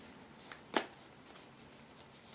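A short, sharp click of a tarot card being handled, with a fainter tick just before it.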